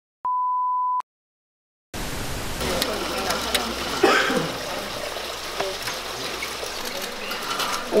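A single steady electronic beep, one pure tone lasting under a second, then a second of silence. After that come the background voices of several people talking, with scattered light clicks.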